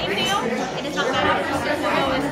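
Overlapping chatter of several people talking at once in a large, busy room.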